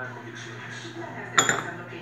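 One sharp clink of glazed ceramic about one and a half seconds in, with a brief ring: the small ceramic teapot being handled, its lid or body knocking.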